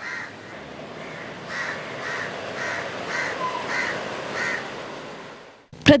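A bird calling over and over outdoors, about seven short calls a little under a second apart, clearest in the middle, over a steady background hiss of outdoor ambience.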